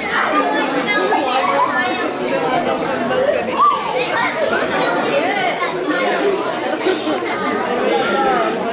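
Many voices chattering at once in a large hall, children's voices among them, with no single speaker standing out.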